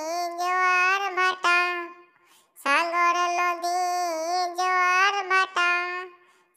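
A single high voice singing a Bangla Islamic gazal unaccompanied, in long held notes. The voice pauses briefly about two seconds in, then starts the next phrase.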